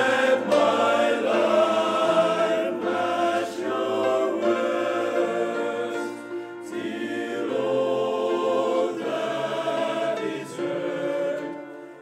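Men's choir singing a hymn in several-part harmony, holding long chords that change every second or so, with brief pauses between phrases.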